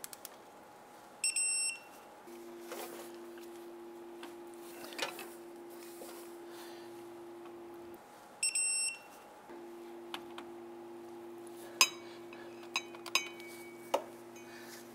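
Electronic beeps from a digital torque wrench as the starter bolts are torqued to 50 ft-lb: a half-second beep about a second in and another about eight and a half seconds in, signalling that the set torque is reached. A few light metal clicks of tools come near the end, over a steady low hum.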